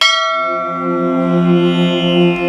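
A bell struck once, ringing out and slowly fading, as an instrumental passage of devotional music begins; sustained instrumental notes swell in under it.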